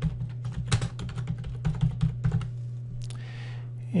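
Typing on a computer keyboard: a quick run of key clicks over the first two and a half seconds, then a few scattered clicks. A steady low hum runs underneath.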